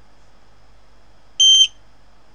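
SparkFun Qwiic RFID reader's buzzer giving one short, high beep about a second and a half in: the sign that a 125 kHz RFID tag held to the reader has been read.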